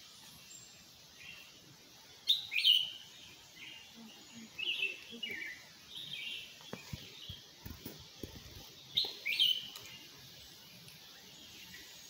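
Forest birds calling: short, falling chirps repeated every second or so, loudest a little after two seconds and again around nine seconds. A few soft low thumps come in the middle.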